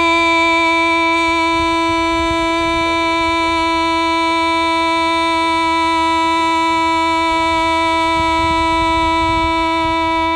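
Hmong kwv txhiaj singing: one long note held at a single steady pitch, which the voice scooped up into from below just before.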